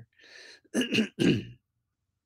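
A man clearing his throat: a breath in, then two short rasps about a second in.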